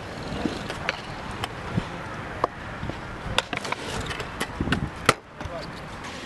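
Stunt scooter wheels rolling on skatepark concrete, with a string of sharp clacks and knocks from the wheels and deck. The loudest clack comes about five seconds in.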